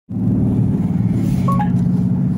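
Dodge Charger's engine and road noise droning steadily, heard from inside the cabin while driving. A brief two-note tone sounds about one and a half seconds in.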